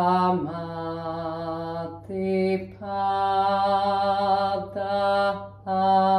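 A woman chanting a Sanskrit text in long, held notes on a near-steady pitch, pausing briefly for breath about two seconds in and again near the end.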